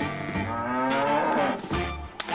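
A cow mooing once, a long call that rises in pitch, over background music.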